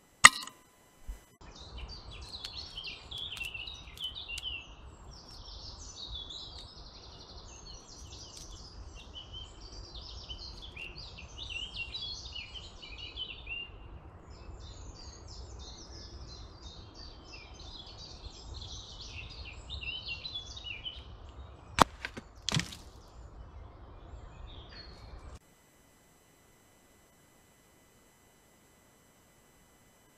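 Small birds singing and chirping in woodland over a steady low background rumble. One very loud, sharp crack sounds just after the start, and two shorter sharp cracks come about 22 seconds in; the sound then cuts out to silence for the last few seconds.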